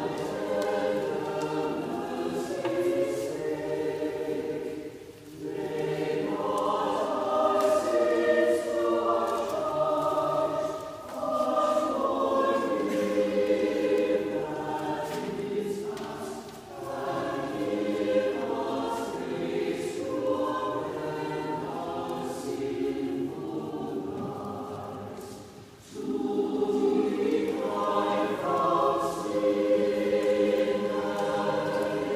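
Mixed church choir singing an anthem in sung phrases, with brief breaks between them.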